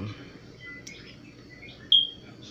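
A few faint high chirps, then one short, sharp high chirp near the end that is the loudest sound, over a low background hum.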